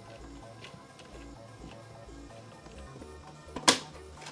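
Background music with a steady beat under light clicks of plastic as a JVC HR-C3 VHS-C recorder's casing is handled. Near the end comes a single sharp snap as the casing comes apart.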